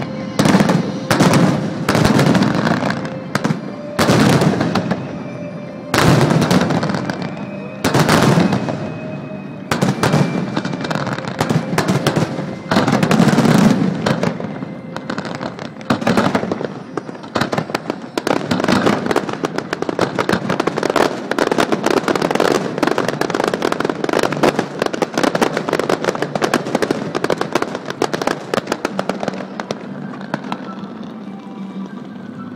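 Fireworks aerial shells bursting: a string of loud separate bangs every second or two over the first half, then dense rapid crackling through the second half.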